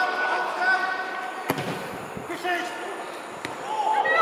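A football kicked hard with a single thud about a second and a half in, as a corner is struck into the box, amid players' shouts across the pitch.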